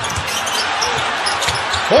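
Basketball being dribbled on a hardwood court, its bounces thumping about three times a second, over the steady noise of an arena crowd.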